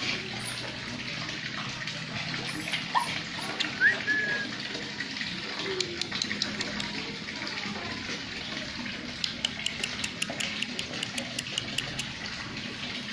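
Steady falling water, like rain, with many short drip ticks that come thicker near the end, and a dog giving a couple of short high whines about three to four seconds in.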